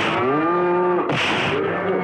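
Cattle mooing: two pitched calls that rise and then hold, with a short harsh burst between them about a second in.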